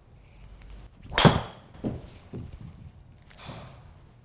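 A driver striking a teed golf ball about a second in: one sharp crack, the loudest sound here. Just over half a second later comes a second sharp knock, then a softer one, as the ball hits the simulator's impact screen and drops.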